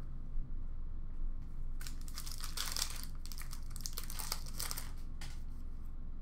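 Crinkly rustling of a hockey card pack's wrapper and cards being handled and opened, heaviest in the middle seconds, with one small click near the start.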